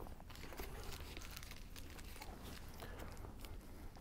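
Faint crinkling and crackling of an ice cream sandwich wrapper being unwrapped and handled, in scattered small clicks.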